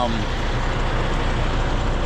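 Semi-truck diesel engine idling steadily: a constant low hum under an even rush of noise.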